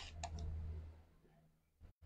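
A few faint clicks in the first half second, with a brief low hum, picked up by a lectern microphone; after that almost nothing.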